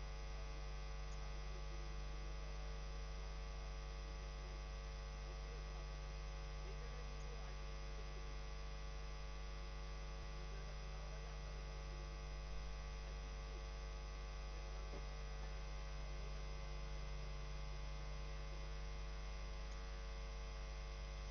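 Faint, steady electrical mains hum: a deep hum with a thin buzz of many higher overtones above it, unchanging throughout.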